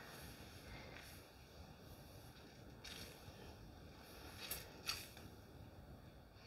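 Faint, soft squishes of wet curly hair being scrunched by hand with styling mousse, a few brief ones spread over near silence.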